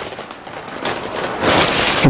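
Rustling of a saree's fabric as it is unfolded and spread out by hand, growing louder toward the end.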